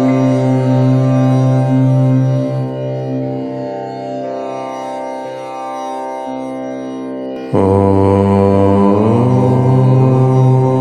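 Low male voice chanting "Om" in long held tones: one chant fades away, and a new one starts abruptly about seven and a half seconds in.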